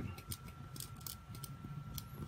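Faint scattered small clicks and rubbing from fingers handling rubber loom bands on a metal crochet hook, over a faint steady high hum.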